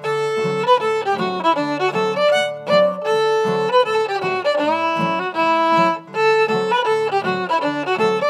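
Fiddle playing a fast melody of quickly changing notes, backed by rhythmically strummed acoustic guitars.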